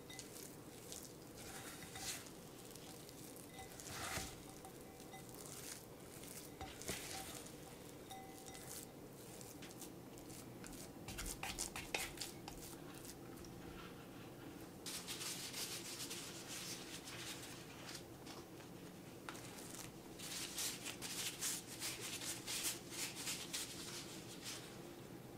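A silicone spatula scraping and folding stiff chocolate cookie dough against the sides of a glass mixing bowl, in faint, irregular strokes. Denser rustling and crinkling comes in the second half.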